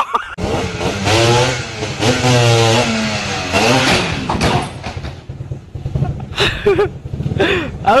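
Loud shouting voices over a running motorcycle engine around a motorbike crash, the loudest stretch in the first half; more voices follow near the end.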